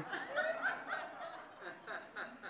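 Audience laughing quietly, a scatter of chuckles that fades away.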